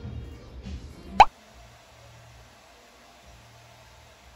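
Background music, cut off about a second in by a short, loud pop sound effect that rises quickly in pitch; after it only faint room tone remains.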